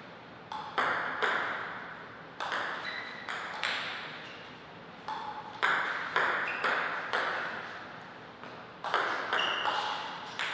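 Table tennis ball being hit back and forth in rallies: sharp clicks off the paddles and table, each ringing briefly in the hall. The hits come in short runs of a few strokes, with pauses of a second or two between points.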